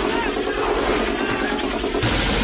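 Rapid, steady automatic gunfire from a film's battle soundtrack, with men shouting over it.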